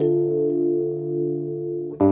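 Intro theme music of held, sustained chords, with a new chord struck as it begins and another right at the end.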